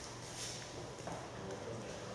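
Room tone in a presentation room before a talk: a steady low hum under a faint murmur of distant voices, with small handling or footstep-like knocks and a brief hiss about half a second in.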